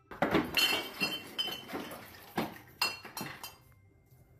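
Light clinking: a string of irregular sharp strikes, each with a short ringing tone, dying away near the end.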